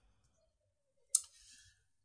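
Near silence, broken a little over a second in by one short, sharp click with a faint tail that dies away within about half a second.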